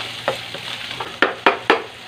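Pork pieces with garlic and onion sizzling in a non-stick frying pan while being stirred, the utensil knocking against the pan about six times.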